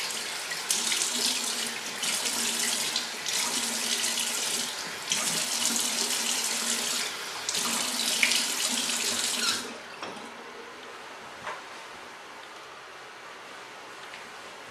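Bathroom sink tap running and water splashing as a face is rinsed, in about five bursts of splashing. The water stops about ten seconds in.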